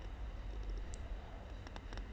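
A few faint clicks from the input device drawing the box around the answer, over a low steady hum.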